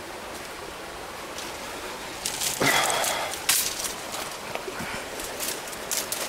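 Dry brush and branches rustling and crackling against a handheld camera as someone pushes through dense scrub. The first two seconds hold only a steady outdoor hiss, and a louder rush of noise comes near the middle.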